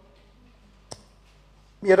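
A single short, sharp click about a second in, during a pause in a man's amplified speech; his speech resumes near the end.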